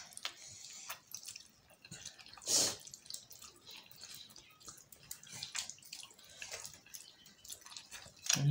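A person eating chow mein noodles, slurping and chewing: a run of small wet mouth clicks and smacks, with one louder slurp about two and a half seconds in.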